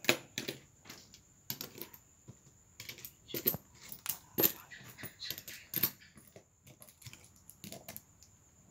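Coins clinking and clattering on a table as they are picked through and counted by hand: a run of irregular light clicks, some louder than others.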